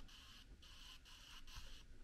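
Faint, regular pulses of a high whir, about two a second, from an external Blu-ray drive spinning and reading a 100 GB Verbatim M-Disc during playback.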